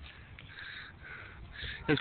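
Three faint, short cawing calls from a bird over a quiet background.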